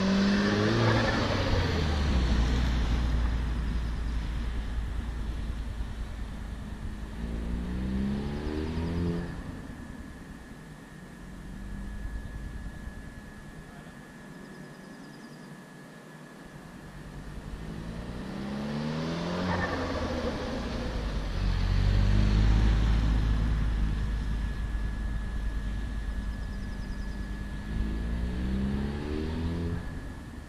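Audi TTS turbocharged four-cylinder engine accelerating repeatedly, its pitch rising each time. It is loudest as the car passes near about a second in and again around 22 s. It fades to a distant hum in between as the car drives off across the lot.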